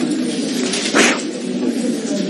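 A low, steady murmur fills the room, with a single sharp knock about a second in.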